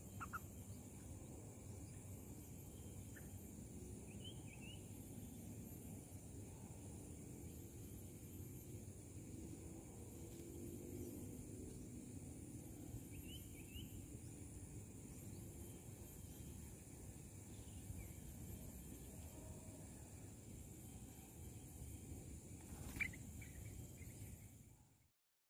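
Faint outdoor ambience with a steady high hiss, broken by a few short, scattered bird chirps: one at the start, pairs about a third and halfway through, and the loudest near the end.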